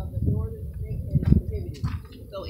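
A bird cooing over a low rumble.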